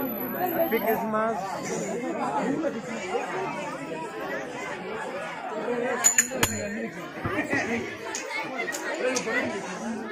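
Many people chattering over one another, children's voices among them. Two or three sharp knocks about six seconds in.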